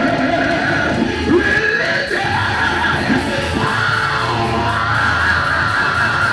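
Live gospel praise music through a church PA: a man singing loudly into a handheld microphone over a band with electric guitar and bass.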